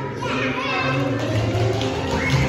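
Young children's voices chattering, with music playing in the background.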